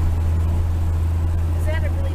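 Steady low drone of a car's engine and tyres on the road, heard from inside the moving car's cabin.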